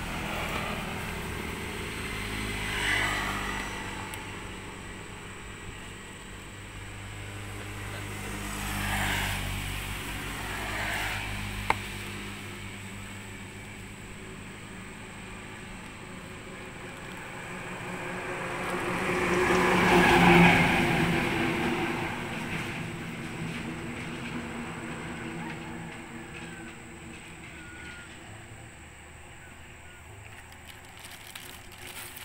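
Motor vehicles passing by, their sound swelling and fading several times, loudest about twenty seconds in. A single sharp click comes just before twelve seconds.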